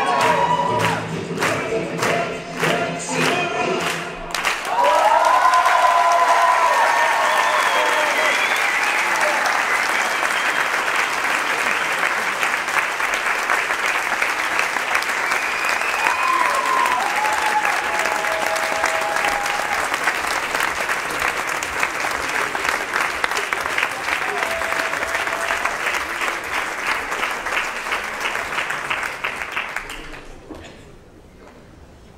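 Dance music with a strong beat stops about four seconds in, and a hall audience breaks into sustained applause with a few cheers, which gradually thins out and fades near the end.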